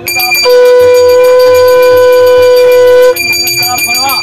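A conch shell (shankha) blown in one long steady note, starting about half a second in and cutting off abruptly after about two and a half seconds, as is done during puja worship.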